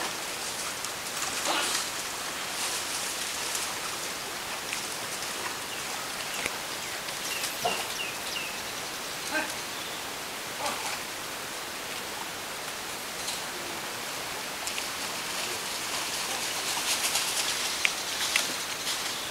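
Steady outdoor hiss of water, like rain or running water, with a few faint high chirps around the middle and scattered small clicks or splashes.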